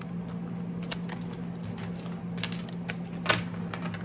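Tarot cards being handled and shuffled: soft rustles and scattered clicks of card stock, with a few sharper snaps in the second half, over a steady low hum.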